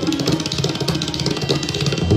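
Tabla and pakhwaj drumming in a fast, dense stream of strokes over a harmonium holding a steady repeating melody (lehra).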